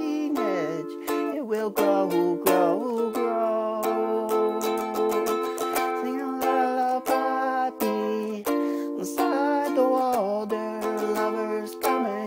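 Ukulele strummed in a steady rhythm of chords.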